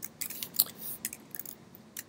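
Computer keyboard typing: a few quiet, irregular key clicks as code is entered.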